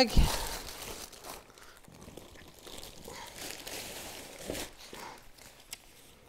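Thin plastic packaging bag crinkling and rustling as it is handled and pulled off. It is loudest in the first second or so, then fades to faint scattered rustles.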